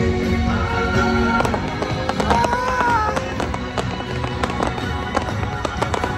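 Fireworks popping and crackling in repeated sharp bursts over loud music.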